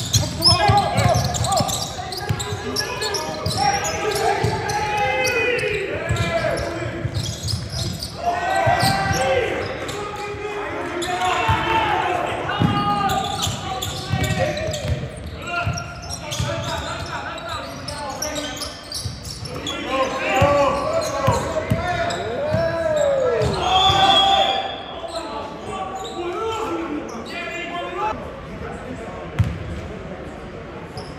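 A basketball being dribbled and bounced on a hardwood court during play, among players' and spectators' shouts and chatter in a large sports hall.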